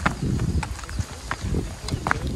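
Footsteps on bare rock, about two a second, short scuffs and thuds over a low rumble.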